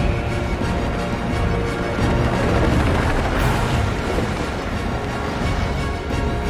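Dramatic film score with sustained held notes over a deep, continuous low rumble.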